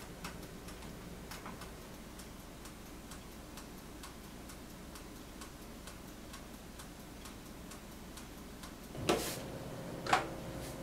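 Faint, steady ticking of a toaster oven's mechanical wind-up timer, just set for 25 minutes. Near the end comes a louder scrape and a clunk as the oven door is opened.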